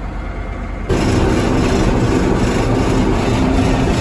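Old Massey Ferguson tractor's diesel engine running, heard from inside the cab, suddenly getting louder about a second in as it is throttled up to move off, then running steadily.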